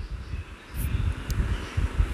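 An uneven low rumble, with faint scraping as a steel spatula stirs and turns mahua fruit frying in oil in a steel kadhai.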